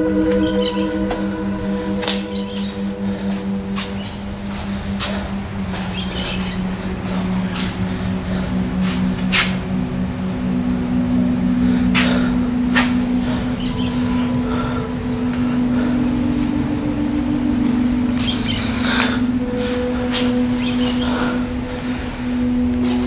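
Background music of long, held low notes that change pitch every few seconds, with birds chirping now and then over it.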